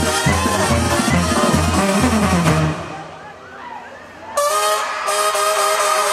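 Banda sinaloense playing live over a concert PA, a pulsing bass line under the brass. The music breaks off about three seconds in for a brief, much quieter gap. Near the end the band comes back in with long held notes.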